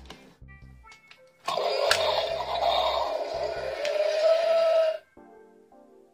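Recorded dinosaur roar played through the small speaker of a light-and-sound Indominus Rex toy figure, set off by pressing the toy. It starts suddenly about a second and a half in, holds for about three and a half seconds and cuts off abruptly.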